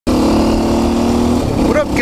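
KTM 530 EXC-R dual-sport motorcycle's single-cylinder four-stroke engine running steadily while riding, heard from the rider's microphone. The steady engine note breaks off about one and a half seconds in.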